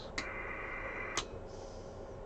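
A low, steady electrical hum from the bench equipment, with two sharp clicks about a second apart.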